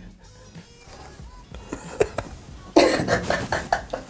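Soft background music, then near the end a man laughing in short, quick bursts at his own joke.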